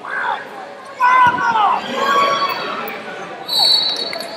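Voices in a large arena hall shouting in short, rising-and-falling yells. A dull thud comes about a second in, and a steady high whistle-like tone sounds for about half a second near the end.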